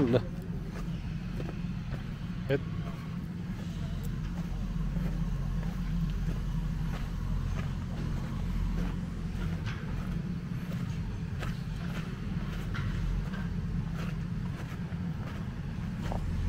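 Steady low rumble of a diesel engine running at a distance, from a backhoe loader working on the dug-up road.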